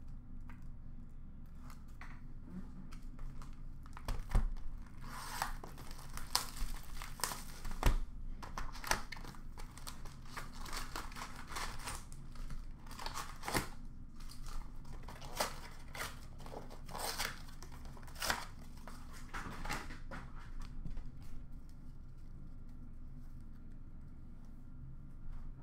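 A sealed box of trading cards being opened: wrapper tearing and foil card packs crinkling, a run of sharp crackles from about four seconds in until shortly before the end.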